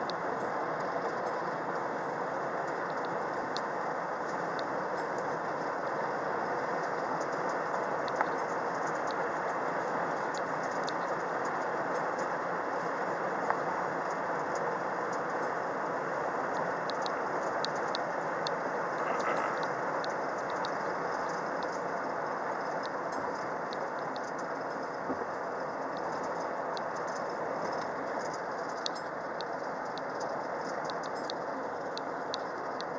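Steady road and engine noise inside a moving car's cabin, with scattered light ticks and rattles throughout, more frequent in the second half.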